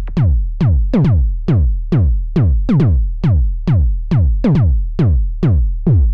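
Synthesized kick drum from a Weston Precision Audio B2 Kick/Bass Voice Eurorack module, hitting in an even pattern a little over twice a second. Each hit sweeps quickly down in pitch into a long low boom.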